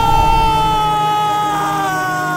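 A long, high wailing voice held on one note that slowly sinks in pitch.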